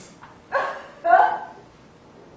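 Two short, loud vocal outbursts from a person, about half a second apart, sharp and bark-like.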